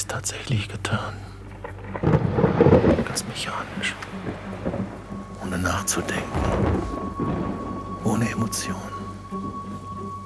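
Thunderstorm with rain, with heavy rumbles of thunder about two seconds in and again around six to seven seconds. A thin steady high tone joins about halfway through.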